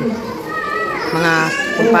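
Several people talking at once, with children's voices among them.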